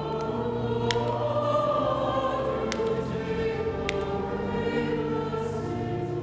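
Church choir singing slow, sustained chords over steady low held notes. A few sharp clicks sound about a second, nearly three seconds and four seconds in.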